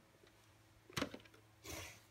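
Camera handling noise in a quiet room: a faint click with a couple of small ticks about a second in, then a short soft rustle near the end.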